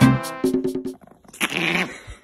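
Backing music with a steady beat that stops about a second in, then a single short, rough vocalisation from a small dog, a Pomeranian, near the end.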